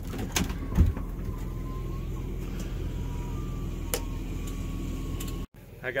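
Electric slide-out motor of a Class A Winnebago RV running as the bedroom slide extends: a steady low drone with a faint whine, with a loud thump about a second in and a few light clicks.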